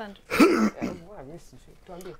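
A person's voice making short wordless sounds: a brief vocal burst about half a second in, then a short wavering hum.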